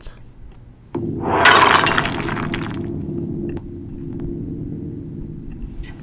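The opening of the freestyle video's audio. About a second in, a low sustained tone comes in suddenly. A loud crashing, shattering noise sits over it for about two seconds and fades, and the low tone then holds steady.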